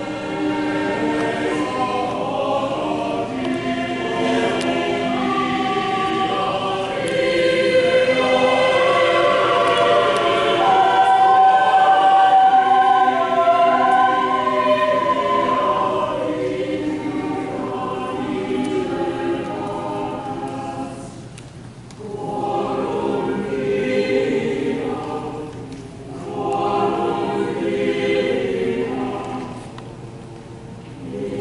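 Congregation and choir singing a processional hymn together, with short breaths between phrases near the end.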